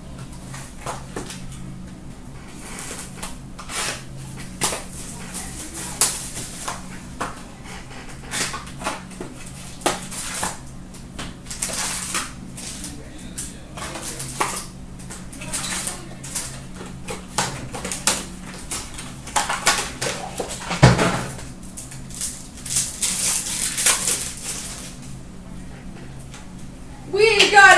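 Hands opening a cardboard trading-card box and handling foil card packs and cards: irregular crackling rustles and light taps, with one heavier thump about five seconds before the end. A low steady hum runs underneath.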